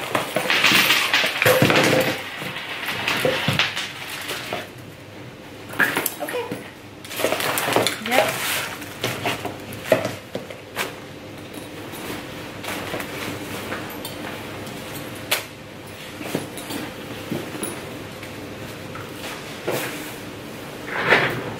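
A gym bag's contents being dumped and pushed around on a tabletop: plastic supplement tubs and other items clattering and knocking, with the rustle of the bag's fabric. The densest clatter is in the first couple of seconds, then scattered knocks as things are moved about.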